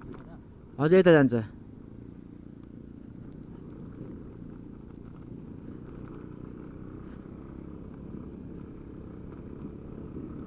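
A brief loud call from a person's voice about a second in, then the steady low running of a motor scooter's engine with tyre noise as it rolls slowly over a rough gravel road.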